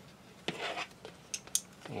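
Small plastic model-kit parts being snapped into slots on a plastic tail section: light handling, then two short sharp clicks about a second and a half in.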